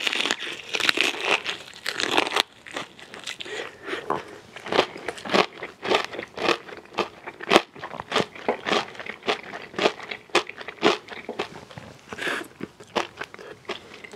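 A close-miked bite into crispy fried chicken, then chewing with a quick run of sharp crunches of the breading, several a second.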